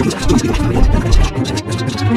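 Film soundtrack: a heavy low rumble under background music, with a short laugh about a second in.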